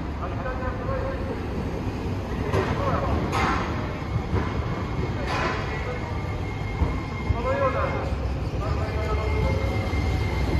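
Sapporo City Tram Type 1100 low-floor tram approaching on street track: a steady low rumble, with a faint steady whine in the last few seconds as it draws near.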